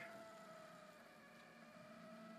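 Near silence: room tone with a faint, steady high whine.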